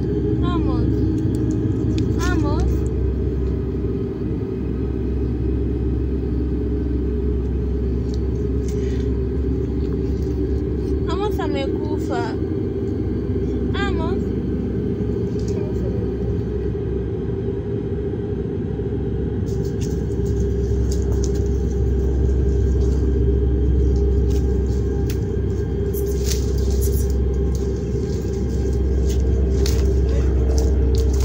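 A low, steady rumbling drone runs throughout. A wavering, voice-like cry breaks in over it a few times: near the start, and again about eleven to fourteen seconds in.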